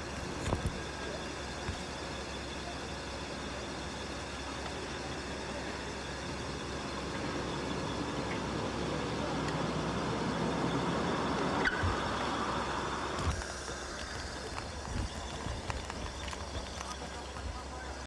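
Night-time street noise with traffic that builds up over several seconds and cuts off abruptly about thirteen seconds in, leaving a quieter hiss. A steady low hum runs underneath.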